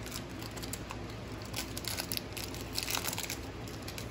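Foil wrapper of a basketball trading-card pack crinkling and tearing as it is pulled open by hand, a scattered run of small sharp crackles.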